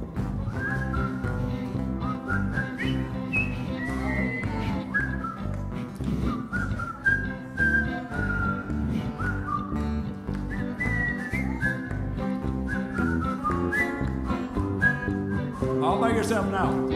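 Someone whistling an Irish melody, with small slides into the notes, over a strummed acoustic guitar and a picked banjo.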